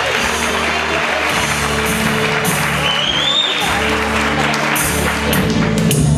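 Audience applauding over the instrumental introduction of a copla song, steady low held notes under the clapping.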